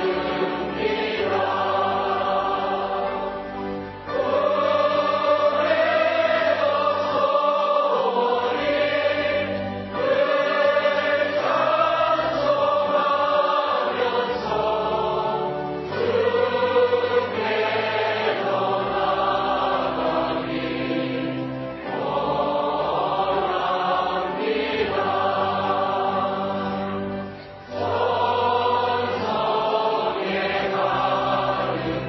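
A choir singing a slow hymn, with long held chords in phrases of a few seconds separated by brief dips.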